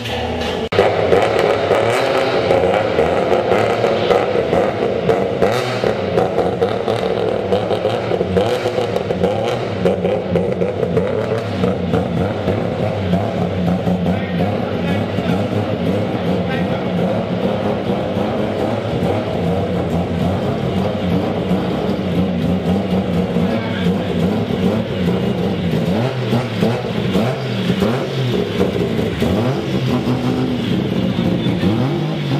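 Bridgeported, turbocharged Mazda 20B three-rotor engine in a first-generation RX-7 running steadily, with a choppy, uneven note and no clear revving, while people talk.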